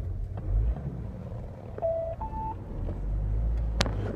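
Peugeot 806's 2.1 turbodiesel running with low cabin rumble while the car rolls, the engine still turning although the rev counter reads zero. About halfway through comes a two-note beep, low then higher, and a sharp click near the end as the rumble grows stronger.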